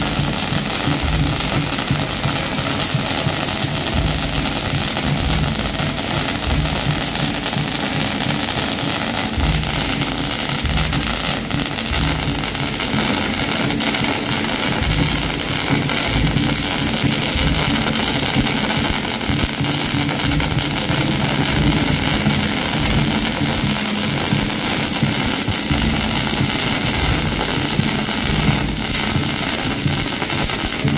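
Fireworks going off on the street pavement, a loud, continuous dense crackle of small bangs that holds without a break.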